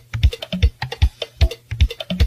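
Percussion music: drums and other clicking percussion playing a quick, steady beat of about four strikes a second.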